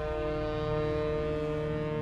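Ocean liner's horn sounding one long, steady blast.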